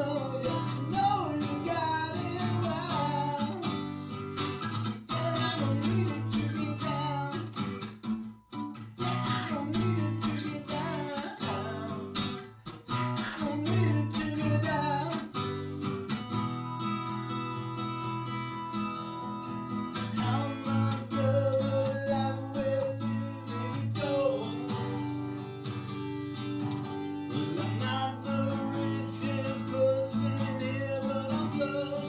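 A man singing over a strummed Takamine acoustic guitar. For a few seconds past the middle the voice drops out while the guitar keeps strumming, then the singing returns.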